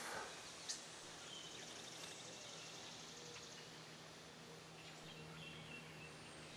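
Faint outdoor garden ambience: a low steady hum under a faint haze, with a few short, faint, distant bird chirps and a faint high pulsing trill of insects.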